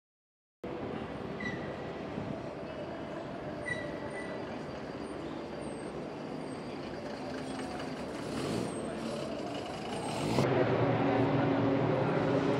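City street traffic: a steady rumble of passing vehicles, with a couple of short high squeaks in the first few seconds. About ten and a half seconds in it cuts to a louder outdoor scene with voices.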